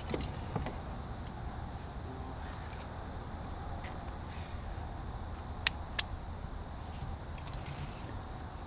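Steady low outdoor rumble, with two sharp clicks in quick succession a little past the middle.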